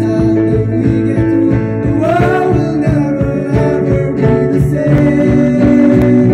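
Live band music: young men singing into microphones over an acoustic guitar with a steady beat, one sung note sliding upward about two seconds in.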